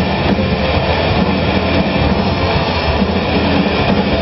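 Hard rock band playing live in an instrumental passage without singing: a steady, dense wall of distorted electric guitar and bass with drums, recorded loud and dull in the highs.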